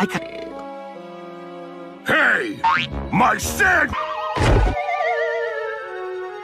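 Cartoon slapstick sound effects over score music: a burst of quick pitch slides and sharp hits about two seconds in, a heavy thud, then a wobbling tone sliding down in pitch.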